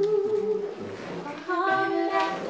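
Vocal music: a voice holding long, steady sung notes over quieter lower notes, moving to a new held note about one and a half seconds in.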